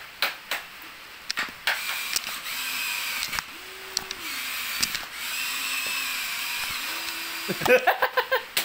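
Small electric motors of a remote-control toy excavator whirring in two runs of about two seconds each, stepping in pitch as the arm moves. Sharp plastic clicks come in between.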